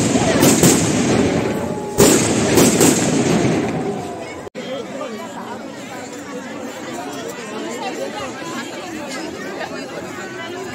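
Fireworks going off at ground level: several sharp bangs with crackling in between over the first four seconds. They cut off suddenly, and the chatter of a seated crowd follows.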